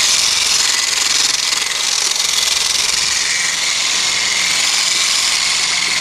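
Handheld electric polisher running steadily, its pad buffing a gloss-black painted trim panel: a loud, even whirring hiss with a faint motor whine.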